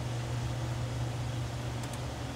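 Steady low hum over a soft hiss: the background noise of the recording room, with a couple of faint ticks near the end.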